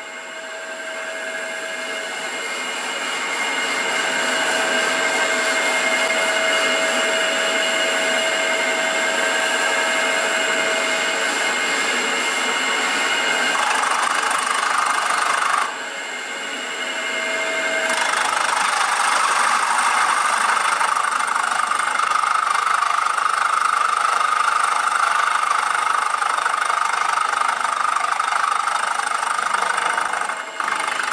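End mill on a CNC mill cutting power slots into a cast-iron flathead Ford engine block: a steady spindle whine with the noise of the cut. It grows louder over the first few seconds and drops for about two seconds around the middle before picking up again.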